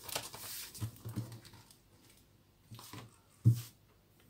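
Paper notebook pages rustling as the notebook is flipped shut. Then a few soft knocks of it and cloth being handled on a wooden table, the loudest a little past three seconds in.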